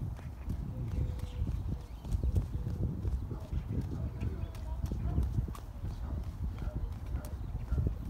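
Footsteps on a concrete sidewalk as an adult and a toddler walk, over a constant low rumble on the microphone. A child's faint babbling comes through now and then.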